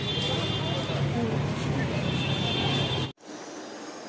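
Busy street ambience of road traffic and crowd voices. It cuts off abruptly about three seconds in and gives way to a quieter, steady background hum.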